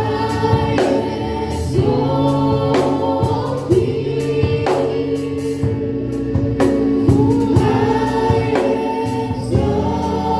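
Gospel worship music: a group of voices singing together over instrumental accompaniment, with a beat about once a second.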